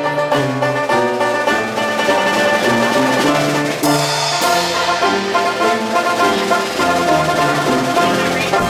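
Live ragtime band playing: upright piano, banjo, tuba bass line and drum kit, with a cymbal crash near the middle.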